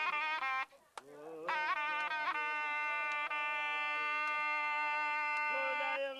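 Zurna playing a loud, reedy folk melody: quick ornamented notes, a brief break about a second in, then one long held note.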